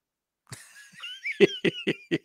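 A man laughing: a run of short breathy bursts, about five a second, starting about half a second in.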